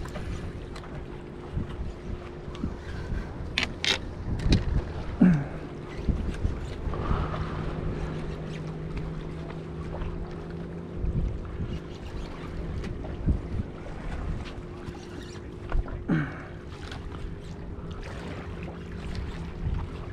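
Wind buffeting the microphone over water lapping against jetty rocks, with a steady low hum running underneath.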